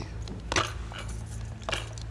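A pause in conversation with a steady low hum and two soft clicks, one about half a second in and one near the end.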